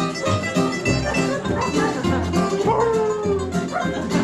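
Acoustic string band playing bluegrass-style music: mandolin strumming over plucked double bass notes, with fiddle and guitar. A long sliding melody note comes about three seconds in.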